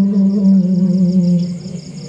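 Karaoke backing music: one held instrumental note with a wavering pitch that fades away near the end.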